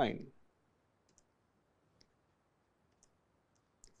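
A handful of faint, short ticks from a stylus tapping on a pen tablet as words are written, spread irregularly over near silence. A spoken word trails off at the very start.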